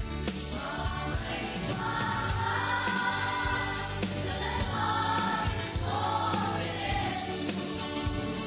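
A choir sings a gospel hymn over instrumental accompaniment with a steady beat. The voices come in about half a second in.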